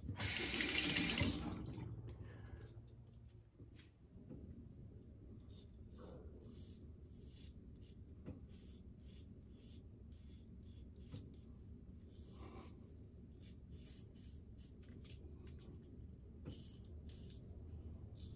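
A water tap runs briefly at first. Then a double-edge safety razor (Vikings Blade Chieftain with a Gillette Nacet blade) makes a run of short, faint scrapes through neck stubble, about one or two strokes a second: light short strokes shaving upward with the grain.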